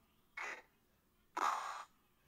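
A slowed-down voice sounding out the hard C sound /k/ twice in short bursts, the second longer and louder.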